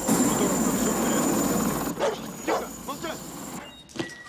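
A dense wash of noise for about two seconds, then a dog barking several times in short, sharp barks.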